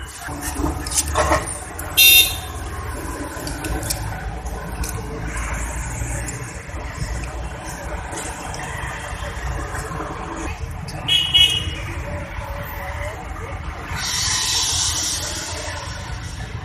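Two short horn toots, one about two seconds in and a shorter one near eleven seconds, over a steady low rumble. A few light metallic clicks come early on, and a brief hiss comes near the end.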